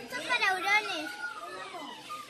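A young child's high voice calling out, its pitch sliding up and down, loudest in the first second.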